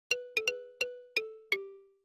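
Short chime jingle of six bell-like struck notes, each ringing and fading. The tune steps lower over the last notes, and the final note rings out longest.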